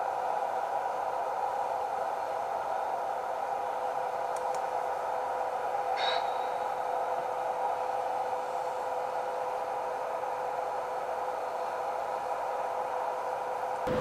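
Steady hiss with a constant hum tone, unchanged throughout, and one brief high chirp about six seconds in.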